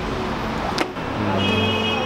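Street traffic noise with passing cars, broken by a sharp click about a second in. Steady tones of background music then come in and hold.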